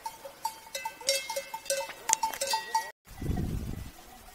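Cowbells on grazing cattle clanking irregularly, many overlapping strikes with ringing tones. About three seconds in the sound cuts off abruptly and gives way to a low rumble.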